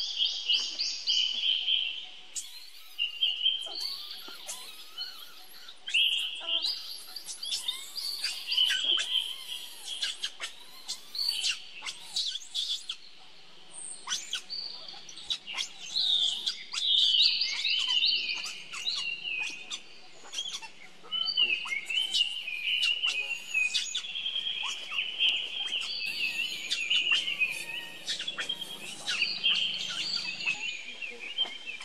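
Birds chirping and twittering, many short high calls overlapping with no pause.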